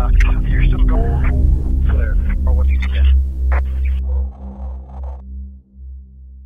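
Intro sound design for a channel logo: a deep electronic drone with steady tones, and a garbled, processed voice-like sound over it for the first few seconds. It fades out about five seconds in.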